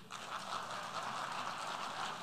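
A steady, even noise from the audience in the large assembly hall during a pause in the speech, well below the level of the voice.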